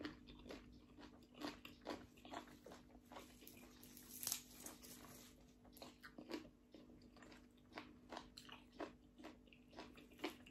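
A person chewing a mouthful of green papaya salad and raw leafy greens, close to the microphone: soft, irregular crunching chews, one louder crunch about four seconds in.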